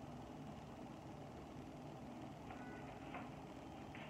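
Quiet room tone with a steady low hum, with a couple of faint, brief soft sounds about two and a half to three seconds in.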